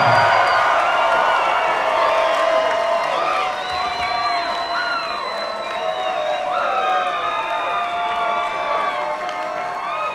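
Arena crowd cheering after a fight decision, with scattered individual shouts over the noise, slowly fading.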